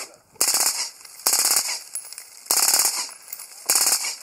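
Suppressed AR-type rifle fired in four short bursts of rapid shots, about a second apart.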